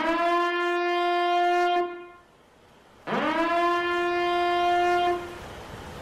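A horn sounding two long blasts, each sliding up in pitch at the start and then holding one steady note; the second blast begins about a second after the first ends.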